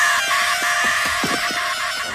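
A teenage boy's long, shrill, wavering scream of terror, the animated character Sid Phillips shrieking as he flees from the toys.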